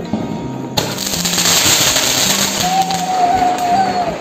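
A Diwali firework going off, starting suddenly under a second in with a loud steady hiss of spraying sparks. Over the last second and a half a wavering whistle joins in.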